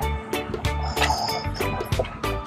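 Background music with a steady beat and a repeating bass line.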